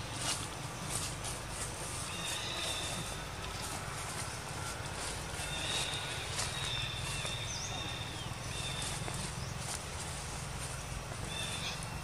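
High, thin, held animal calls, each lasting a second or two and coming several times, over a steady low rumble and scattered faint clicks.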